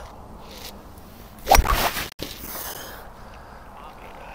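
A golf club striking the ball off the fairway: one sharp strike about a second and a half in, with a brief rush of noise after it, over faint outdoor background.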